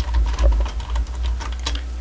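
Irregular light clicks and ticks of a screwdriver turning a screw out of a Lortone rotary tumbler's sheet-metal cover, with small taps of the metal case being handled.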